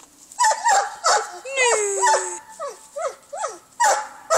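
A dog barking and yelping in a quick run of short calls, with one longer falling whine about halfway through.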